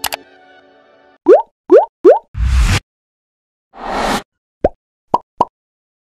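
Edited-in outro sound effects: a held musical chord fades out, then come three quick rising pops, a whoosh with a low thud, a second whoosh, and three short pops near the end.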